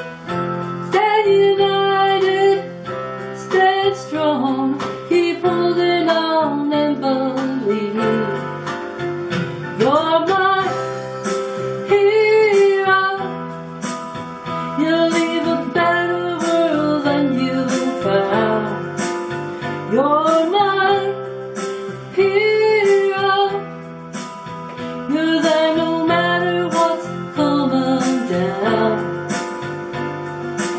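A woman singing a slow song to guitar accompaniment, her voice gliding between held notes over sustained chords.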